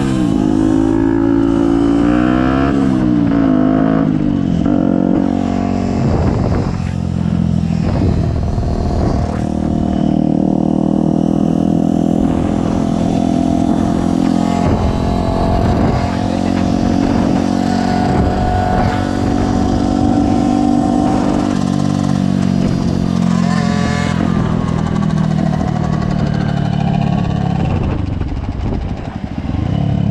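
Small-displacement motorcycle engines running hard under way, heard from on board, the pitch sweeping up and down with throttle and gear changes in the first few seconds and again about 24 seconds in, then holding steady at speed.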